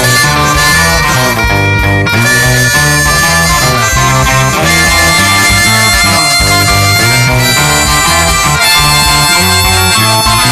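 Blues band in an instrumental break: a harmonica solo with long held notes over electric guitar and a repeating bass line.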